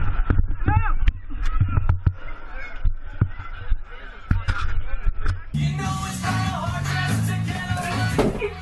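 Voices and music with scattered sharp knocks; about five and a half seconds in, the sound cuts abruptly to a different, clearer recording.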